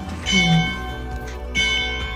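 A bell struck twice, a little over a second apart, each stroke ringing out briefly and fading.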